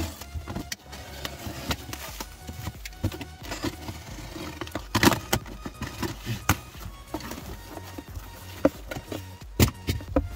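Plastic stretch wrap being slit with a blade and torn off a cardboard box: irregular crinkling, ripping and rustling handling noise, with louder rips about five seconds in and near the end as the box is opened. Faint background music runs underneath.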